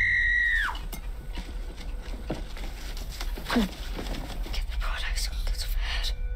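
Horror-film soundtrack: a shrill, steady high-pitched tone like a scream or screeching strings holds, then cuts off under a second in. After that the sound is quieter, with two short falling cries about two and three and a half seconds in.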